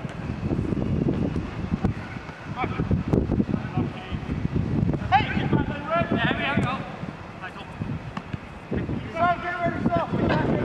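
Wind buffeting the microphone in a rough, gusty rumble, with players' shouted calls across the pitch twice, around the middle and again near the end.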